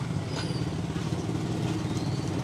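Steady low hum of an engine running at idle.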